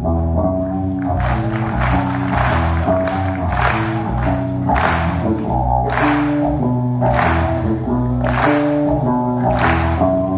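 Live rock band playing through a PA in a hall: sustained melodic chords over bass and electric guitar, with a drum accent and cymbal crash about every second and a bit.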